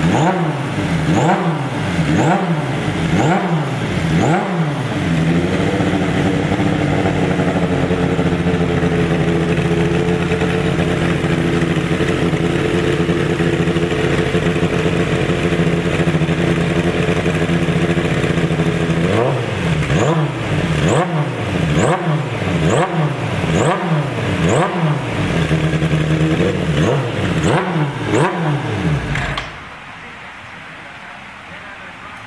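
Suzuki GSX-R750R race bike's inline four-cylinder engine being blipped on a stand, the revs rising and falling about once a second. It then holds a steady speed for about fourteen seconds, is blipped again, and is switched off just before the end.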